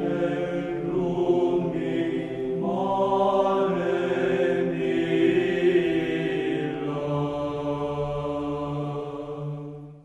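Sung church chant as title music: voices hold a steady low note beneath a moving melody, fading out in the last second.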